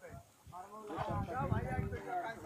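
Men's voices talking and calling out over one another, after a brief lull near the start, with a low rumble underneath.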